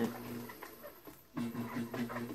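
Electric pottery wheel running with a steady low hum while wet clay is compressed by hand, with faint slick rubbing from fingers on the clay. The hum drops out for under a second midway and comes back.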